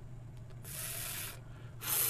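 A man's drawn-out voiceless 'fff', air hissing between the upper teeth and lower lip, showing where the Arabic letter fa (ف) is articulated. One hiss lasts under a second, and a second one starts near the end.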